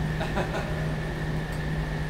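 A steady low mechanical hum with a thin, steady high whine above it, with no distinct events.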